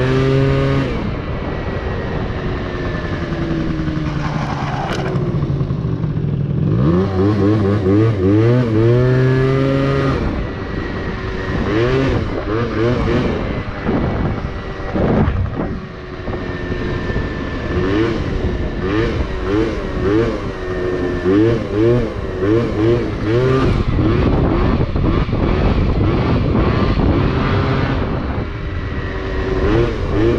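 Two-stroke Yamaha Zuma scooter engine with a 70cc Malossi cast-iron big-bore kit and Malossi expansion-chamber exhaust, ridden hard, its pitch rising and falling over and over as the throttle is opened and closed. Around five seconds in and again near sixteen seconds the revs drop away, then build back up.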